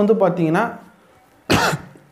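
A man's single short cough about one and a half seconds in, after a few words of speech trail off.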